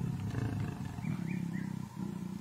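A mating pair of lions growling: a low, rasping, pulsing growl that runs on, with a few faint short high notes about a second in.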